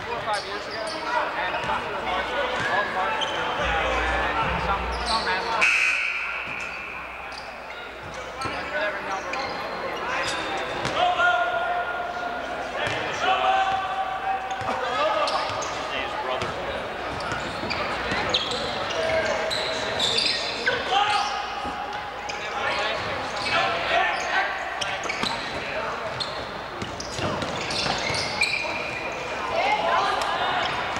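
Basketball game sounds on a hardwood gym court: a ball bouncing as it is dribbled and sneakers squeaking in short bursts, over the voices of players and spectators.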